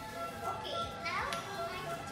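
Girls' voices chattering over background music, with one quick rising vocal sweep a little past the middle.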